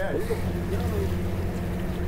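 Boat engine running at low speed, a steady low hum.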